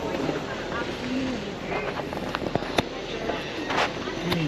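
Indistinct chatter of passers-by over a steady street hum, with a couple of sharp clicks about two and a half seconds in and a short hiss near the end.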